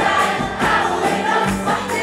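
Live Arabic pop band, with keyboards and electric bass, playing a song with singing, heard from within the audience in a concert hall.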